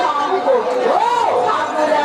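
A person's voice with wide, sliding rises and falls in pitch, with chatter behind it and no drumming.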